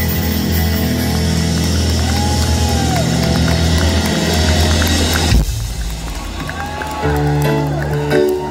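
Live rock band holding a loud final chord with heavy bass, which stops abruptly about five seconds in. The crowd cheers, and near the end the band starts the first notes of the next song.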